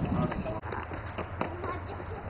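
Indistinct voices with a few sharp knocks over a steady low hum.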